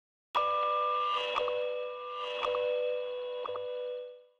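Short musical logo sting: a bright sustained chord of chiming tones that starts abruptly, with three soft accents about a second apart, fading away at the end.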